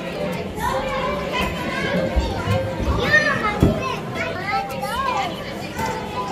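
Many children's voices chattering and calling out at once, the busy babble of a children's play area, with a single low thump a little past halfway.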